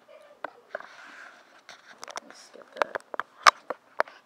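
A string of sharp clicks and knocks, the loudest about three and a half seconds in, with voices in the background.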